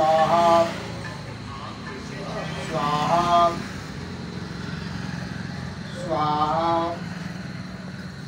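A man's voice intoning 'swaha' at the close of each mantra as offerings go into a havan fire, three held calls about three seconds apart, over a steady low hum.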